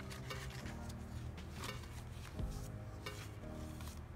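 Background music with held notes, over the rustle of paper pages being turned by hand.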